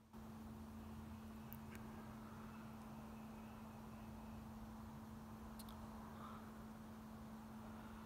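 Near silence: faint room tone with a steady low hum and a few faint clicks.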